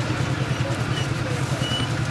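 A steady low hum over a faint background hiss, with two faint short high tones, one about a second in and a longer one near the end.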